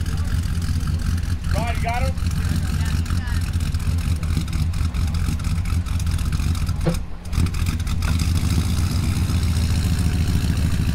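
Engine of a lifted crew-cab pickup truck running steadily with a deep low rumble, its exhaust puffing out behind the rear wheel, with a brief dip about seven seconds in.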